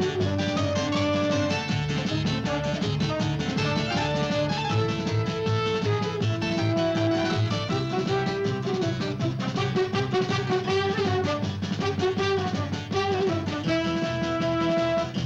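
Instrumental TV theme music: a plucked-string melody over a steady rhythmic beat.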